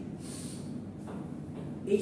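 A man's breath drawn in sharply through the nose, picked up close by a clip-on microphone, in a gap between words; speech starts again right at the end.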